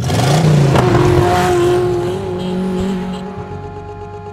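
Motor scooter engine revving, loud and sudden at first and fading over the next few seconds, over background music.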